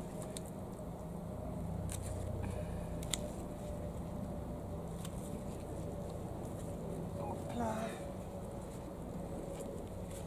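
Steady low hum of distant road traffic, with a few faint sharp clicks early on and a brief higher pitched sound about three-quarters of the way through.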